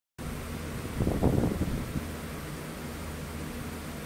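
Steady low hum and hiss of room background noise, with a brief rustle a little over a second in.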